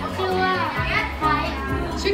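Children's voices talking over background music with steady low bass notes.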